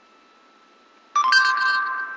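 A voice-search app on an iPod touch sounding a short two-note electronic chime about a second in, a lower tone followed at once by a higher one, both ringing on briefly. It marks that the app has finished listening and is bringing up the answer. Before it there is only faint room tone.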